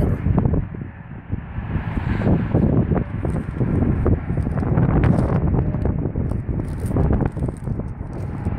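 Wind buffeting the microphone: a low rush that swells and dips in gusts.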